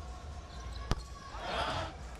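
A basketball bouncing once on a hardwood court: a single sharp knock about a second in, over the low rumble of an arena crowd that swells briefly near the end.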